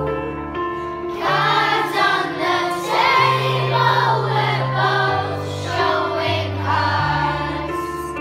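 Children's choir singing a slow ballad, with a girl singing a solo into a microphone, over an instrumental accompaniment of held bass notes.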